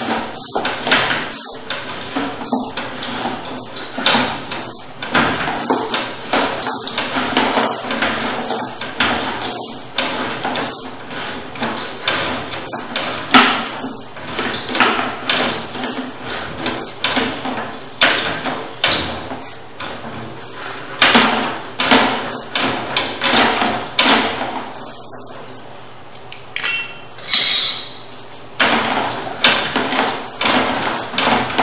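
Sewer inspection camera's push cable being fed by hand down a drain line, with irregular knocks and rattles about once a second.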